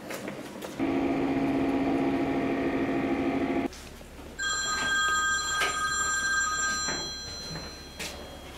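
Telephone ringing twice. The first ring is a lower, buzzy tone lasting about three seconds from about a second in. The second is a higher, brighter ring that starts about four and a half seconds in and fades out a little before seven seconds.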